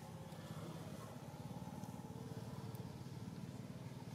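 A faint, steady low engine hum with a fine rapid pulse, with a few thin high tones above it.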